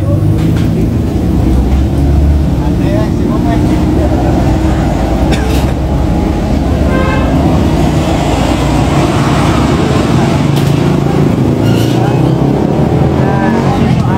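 Steady low rumble of a running vehicle engine and nearby road traffic.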